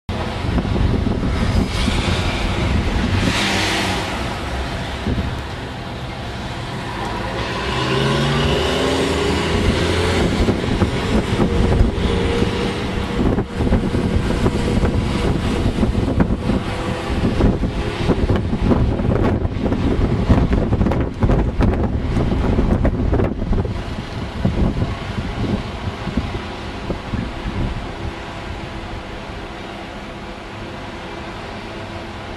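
Heavy-haulage lorry's diesel engine pulling a loaded low loader, running with a deep rumble that rises in pitch about a quarter of the way in as it works harder. Irregular knocks and rumbles run through the middle, and the noise eases off near the end.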